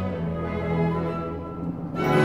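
Orchestral film-score music: bowed strings holding sustained chords over low held notes, easing off slightly near the end.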